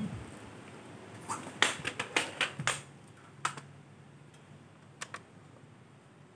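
A run of sharp clicks and taps, then two quick clicks near the end, from a hand working the front-panel buttons of a Samsung disc player to open its disc tray.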